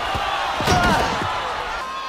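Film soundtrack of a wrestling bout: a few heavy thuds of bodies hitting the ring in the first second or so, over a shouting arena crowd.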